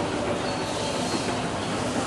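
Escalator running: a steady mechanical noise from the moving steps and drive, with a faint hum in it, heard from on the steps while riding up.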